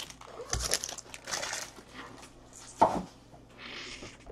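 Light rustling and crinkling of trading cards and their packaging handled on a table, with a single sharp knock almost three seconds in.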